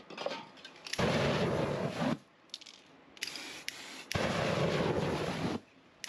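Spray-paint aerosol lit into a flame torch, two rushing bursts of fire of about a second and a half each, with a fainter spray hiss between them.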